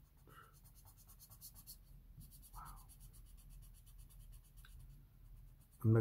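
Felt-tip marker scratching across paper in quick, repeated back-and-forth strokes as a dark area is coloured in, with a short pause about two seconds in.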